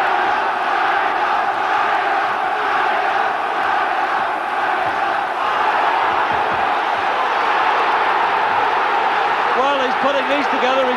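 Large boxing arena crowd cheering and shouting continuously, a dense wall of voices, as a fighter presses an attack; the TV commentator's voice comes back in near the end.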